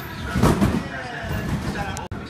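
A trampoline bed thumps once as a gymnast lands on it, about half a second in. Indistinct voices echo in a large gym hall.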